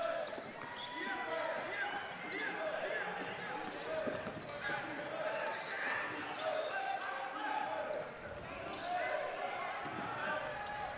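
Basketball being dribbled on a hardwood court, with faint players' and bench voices calling out in a large, echoing gym.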